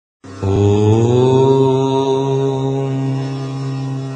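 A long chanted devotional tone, like a sustained mantra, opening the audio. It starts about half a second in, slides upward in pitch over the first second, then is held and slowly fades.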